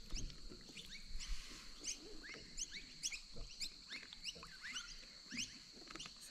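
Small birds chirping faintly, short rising calls a few times a second, over a faint steady high whine.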